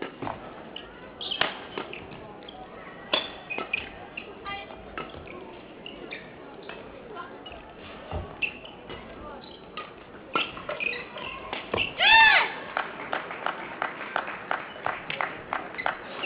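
Badminton rally: rackets striking a shuttlecock in a series of sharp pops, quickening into a fast exchange in the second half. A loud squeak, typical of a court shoe on the hall floor, comes about twelve seconds in.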